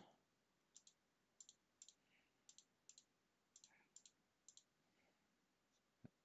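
Faint computer mouse clicks, many in quick pairs, spread over about four seconds: points are being selected and deleted one by one from a list in the software.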